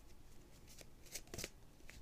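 Oracle cards being shuffled and handled: a few faint, short flicks and rustles of card stock.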